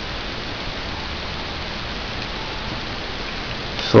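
Steady, even hiss of background noise, with no distinct clicks or knocks from the pistol being handled.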